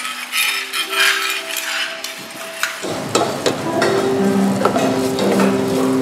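Background music over sharp clinks of metal spoons against aluminium pots and stone mortars. From about three seconds in the sound fills out as curry paste fries and is stirred in a hot pot.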